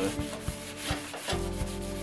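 Paper towel rubbing flaxseed oil into a hot cast iron skillet, scrubbing in a quick run of short strokes: the pan is being seasoned.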